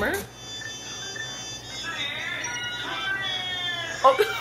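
Soundtrack of a Korean TV variety-show clip: high-pitched voices exclaiming and talking over faint background music.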